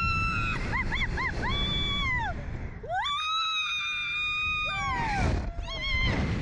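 Riders screaming on a Slingshot reverse-bungee ride: a few short whoops, then a long high scream that falls away at its end. Wind rushes over the microphone underneath as the capsule is flung through the air.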